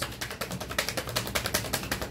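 A tarot deck being shuffled by hand: a fast, even run of card clicks, about a dozen a second.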